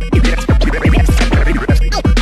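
Vinyl scratching on turntables, played through JICO J44A 7 DJ styli: rapid back-and-forth pitch sweeps chopped by the mixer fader, over an electro beat with deep bass.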